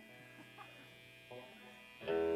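Faint steady electrical hum and buzz from idling guitar amplifiers, with a few faint murmurs.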